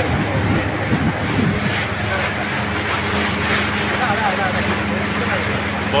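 Motorboat running steadily while underway: a constant low engine hum with wind and water noise over it, and people's voices in the background at times.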